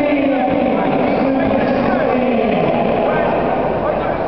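Crowd chatter: many voices talking and calling at once in a steady babble.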